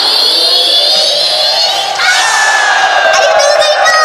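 A female performer's voice shouting through the stage microphone amid crowd cheering. A high cry rises in pitch for about two seconds, then gives way to a long held high note.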